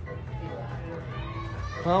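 Faint background talk in a room over a steady low hum, with a voice starting to speak near the end.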